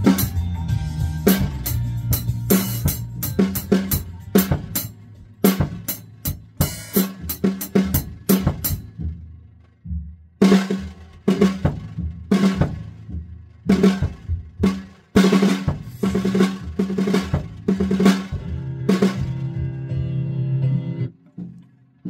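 Acoustic drum kit played along with a song's recording: a busy groove of snare, bass drum and cymbals, then after a short break about nine seconds in, a run of spaced, heavy accented hits with cymbal crashes. The music holds a final chord and stops about a second before the end.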